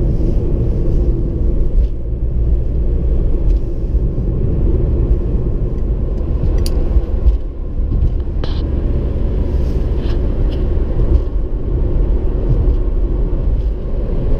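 Steady low rumble of engine and tyre noise inside a car's cabin while driving at speed, with a few light knocks partway through.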